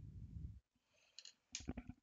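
A colored pencil being put down on a hard desk: a brief low rustle of handling, then a quick cluster of light clicks and knocks near the end.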